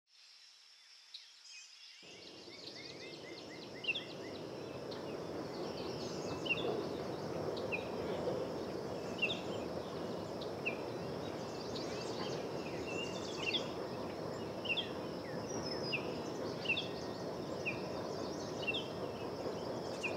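Outdoor garden ambience fading in: a bird repeats a short, sharp call about once a second over a steady high insect hum and a low wash of distant background noise.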